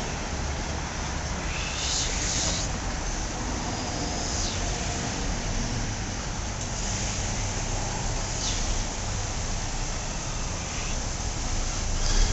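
Steady low rumble of idling cars and traffic, with a few soft rushing swells of noise.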